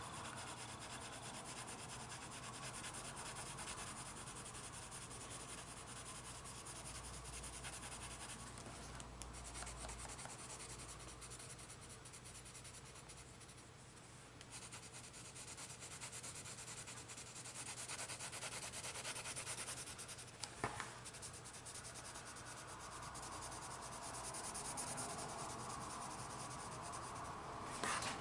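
Coloured pencil shading on paper: a faint, continuous scratchy rubbing of the pencil across the page, with one brief click about three-quarters of the way through.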